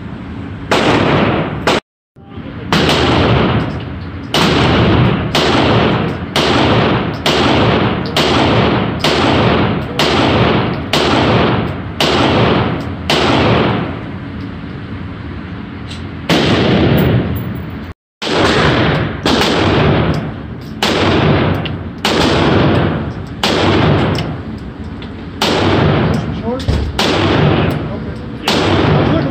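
A 9mm semi-automatic pistol fired shot after shot at a steady pace of a little over one a second, each report echoing in an indoor range. The sound drops out completely for a moment twice, and the firing pauses briefly about halfway through.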